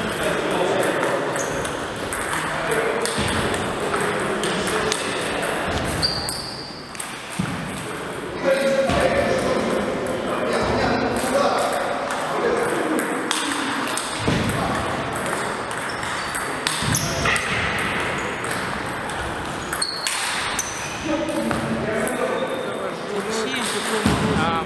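Table tennis rally: the celluloid/plastic ball clicking off rubber-faced paddles and bouncing on the table, in repeated sharp strikes, with voices talking in the background.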